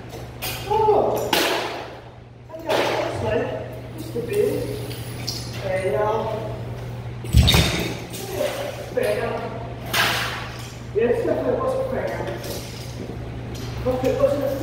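Indistinct voices over a steady low hum, with one loud, sharp bang about seven seconds in and a few softer knocks in the first three seconds.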